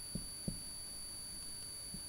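Quiet room with a steady faint hiss and a thin high-pitched electronic whine, and two faint soft taps in the first half second from a marker writing on a whiteboard.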